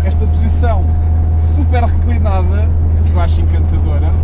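Steady low drone of a 1970 Porsche 911T's air-cooled 2.2-litre flat-six, heard from inside the cabin, running gently while the engine is not yet warmed up. A man's voice talks over it at times.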